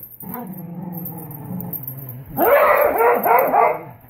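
Dogs growling during a tug-of-war over a rope toy: a low, steady growl, then louder, choppier growling with barks from a little past the middle.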